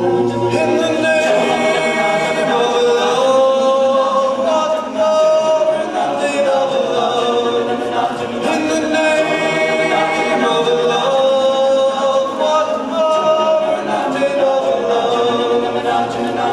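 All-male a cappella group singing held chords in close harmony, the voices moving together from chord to chord.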